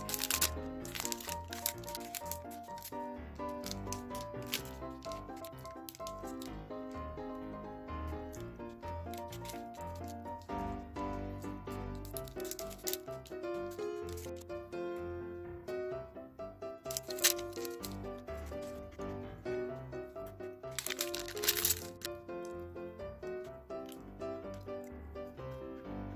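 Background music with a simple melody runs throughout. Over it a plastic snack wrapper crinkles and tears as it is opened by hand, with the loudest bursts at the very start and again about two-thirds of the way in.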